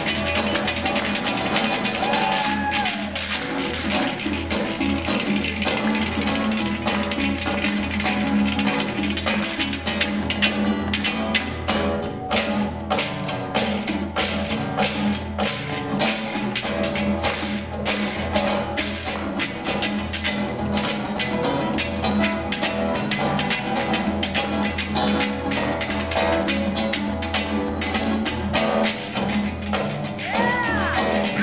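Acoustic guitar strumming with body percussion, hands slapping the chest in a quick rhythm; the slaps grow sharper and denser about ten seconds in.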